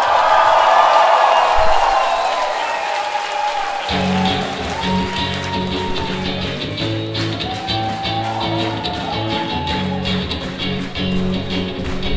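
Live post-punk band playing: ringing electric guitar chords with no low end at first, then bass guitar and drum kit coming in about four seconds in, with a steady beat and ticking cymbals.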